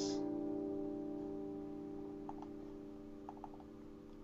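Acoustic guitar A minor chord, played as an A7sus4 voicing with the top two strings held at the third fret, ringing out after the strum and slowly dying away. A few faint clicks come in the second half.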